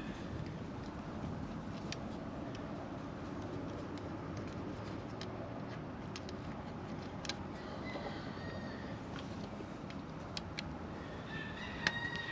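Quiet outdoor background with a steady low rumble. Over it come a few faint clicks from a screwdriver working the brass terminal screws of a well pump's pressure switch, and a faint bird call about eight seconds in.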